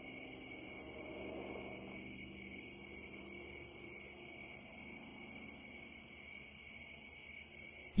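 Crickets chirping in a steady, high-pitched trill with light regular pulses.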